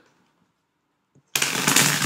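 A tarot deck being riffle-shuffled by hand: near silence, then a rapid, loud run of card flicks that starts suddenly a little after halfway.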